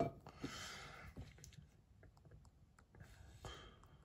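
Quiet handling sounds at a pour-over coffee dripper: soft scattered clicks, with a short hiss about half a second in and a fainter one near the end.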